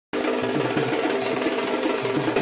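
Dhak drums played in a fast, dense, steady rhythm, cutting in abruptly just after a brief gap at the start.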